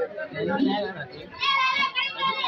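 Voices of a dense, milling crowd talking over one another, with a high-pitched voice calling out loudly about a second and a half in.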